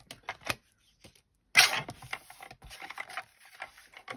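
Sheet of white card being handled and slid across a paper trimmer's base. A few light clicks come first, then a sharp papery scrape about one and a half seconds in, followed by quieter rustling and ticks.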